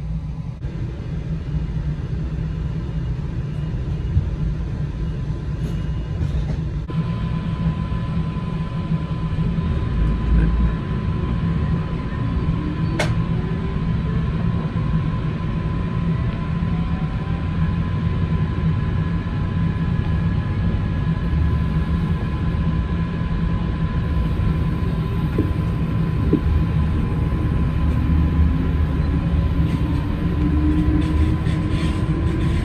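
Coaster commuter train heard from inside a passenger car as it pulls away and runs: a steady low rumble, with a thin steady tone coming in about a quarter of the way through and a single sharp click near the middle.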